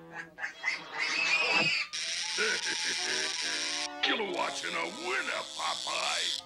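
Cartoon background music with wordless character vocal sounds, and a high hissing sound effect that runs about two seconds, twice.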